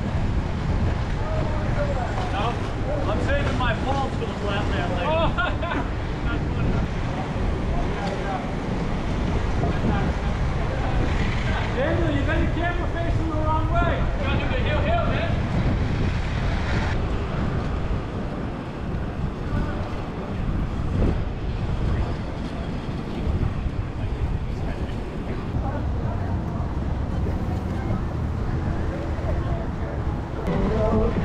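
Steady low rumble of wind on the microphone mixed with inline skate wheels rolling on street asphalt. Indistinct voices of several people come and go over it, mostly in the first few seconds and again around the middle.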